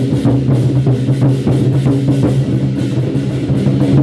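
A troupe of large Chinese war drums beaten with wooden sticks, played loud in a fast, dense rhythm with the deep ring of the drumheads carrying underneath.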